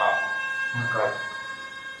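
Eerie, sustained siren-like drone of several steady pitches sounding together, fading away near the end, with a single short spoken syllable about a second in.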